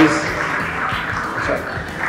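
Audience applause in a large hall, slowly dying away.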